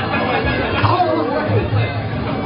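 Muay Thai ring music (sarama): a reedy Thai oboe melody wavering up and down over drums, with crowd chatter throughout.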